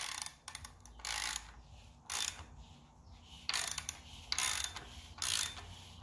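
Ratchet wrench on the crankshaft bolt of an Audi 2.0T engine, turning it over by hand with its pawl clicking in about six short bursts, roughly one a second. The new balance shaft and timing chains turn over without binding: "sounds good".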